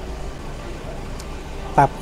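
A low, steady background rumble with no clear event in it. A man says one short word near the end.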